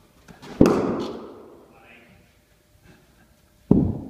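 Cricket bat striking a fed ball twice, about three seconds apart, each a sharp crack that echoes in a large indoor hall.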